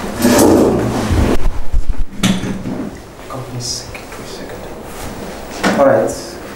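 An office chair scraping and creaking as a person sits down at a desk, with a knock about two seconds in and papers being handled.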